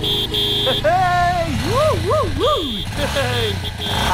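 Street traffic: a vehicle engine running low and steady, with a voice calling out in rising and falling tones and a high beep that sounds on and off.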